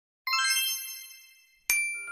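Two bright, bell-like chime dings. The first enters about a quarter second in and fades away over more than a second; the second strikes sharply near the end and keeps ringing.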